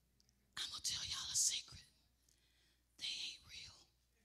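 A woman whispering breathily close to a handheld microphone, in two bursts: a longer one starting about half a second in and a shorter one about three seconds in.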